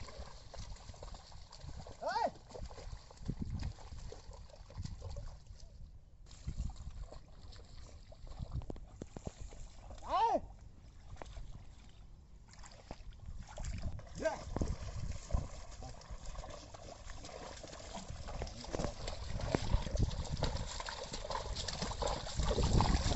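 A pair of bullocks pulling a plough through a flooded paddy field: hooves and ploughshare squelching and sloshing in the mud and water, irregular and louder toward the end. Two short rising-and-falling calls stand out, one about two seconds in and one about ten seconds in.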